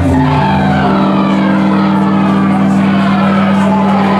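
A loud, steady low drone held by the band's amplified instruments, one sustained chord that shifts once about half a second in and then holds, with fainter voices over it.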